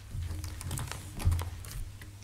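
Bible pages being turned and handled on a wooden lectern: a scatter of light clicks and rustles with soft low thumps, the strongest about a second and a half in.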